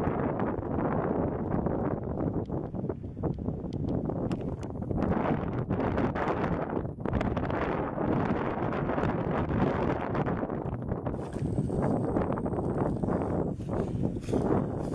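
Strong wind buffeting the microphone: a steady rush with rapid flutters and gusts throughout.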